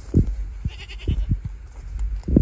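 A short, faint animal call with a rapid flutter about a second in, over several low thuds.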